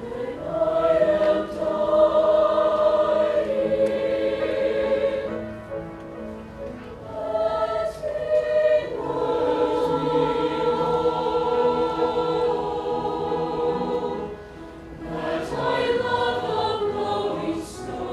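Mixed choir singing a slow piece in long, sustained chords, phrase by phrase, softening briefly twice between phrases.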